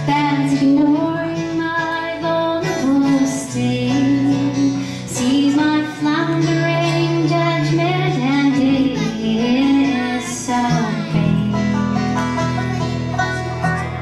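Live band playing a song on banjo, electric guitar and drum kit, with a woman singing a melody over sustained low notes.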